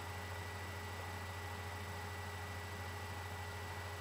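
Quiet, unchanging room tone: a steady low hum with a thin steady high tone and hiss, and no distinct sounds.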